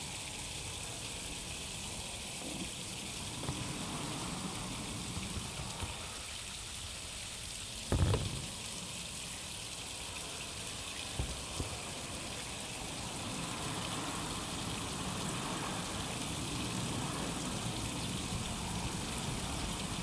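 Hands and a sponge scrubbing a wet, soapy acrylic painting to wash the silicone off, over a steady hiss of light rain. A single sharp knock about eight seconds in.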